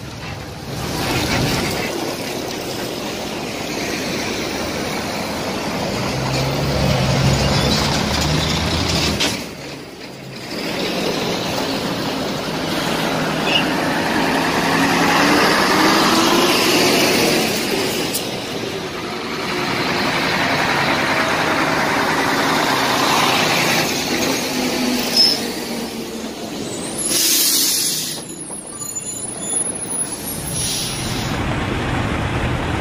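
Heavy military trucks and armoured vehicles of a convoy driving past close by, their diesel engines running loud, with the engine pitch sliding up and down as vehicles go by. A short hiss comes near the end.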